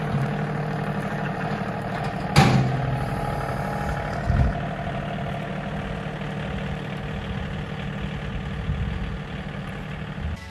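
A John Deere compact utility tractor's diesel engine runs steadily as the tractor drives away, growing slightly fainter. There is a sharp click about two and a half seconds in and a low thump a couple of seconds later.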